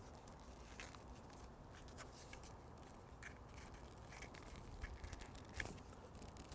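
Faint, scattered clicks and rustles of an extension cord being handled, its end pushed through the coil and pulled tight.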